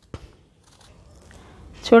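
Faint handling sounds of raw banana being peeled over a steel bowl of water, with a short tap just after the start and soft rustling after it. A woman starts speaking near the end.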